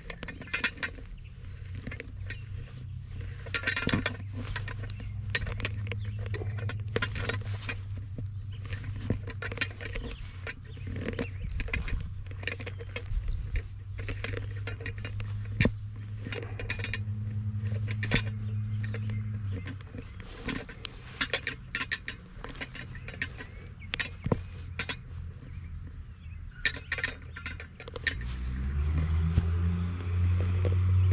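A metal sod plug cutter driven into dry soil by foot and worked back and forth: repeated clinks, knocks and gritty scrapes of metal against dirt. Under it runs a steady low hum that fades about two-thirds of the way through and returns louder near the end.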